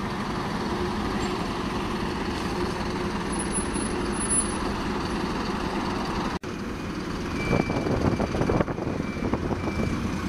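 Bus engines running as buses move around a bus station, a steady drone that drops out for an instant about six seconds in. In the last few seconds it grows louder and rougher, and short high beeps repeat.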